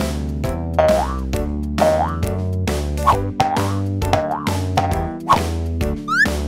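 Upbeat children's cartoon background music with a steady beat and a sustained bass line. Short upward-sliding cartoon sound effects recur about once a second over it.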